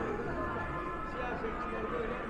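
Indistinct chatter of many voices in a large, busy hall, with no single speaker standing out.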